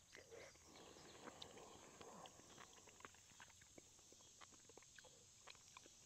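A man eating noodles off a plastic spoon: faint chewing with soft wet mouth sounds in the first couple of seconds, then a run of small mouth and spoon clicks.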